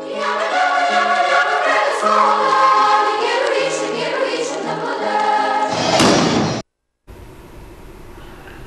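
Choir singing with musical accompaniment in long, held notes. It stops suddenly about six and a half seconds in, followed by a brief gap and faint room tone.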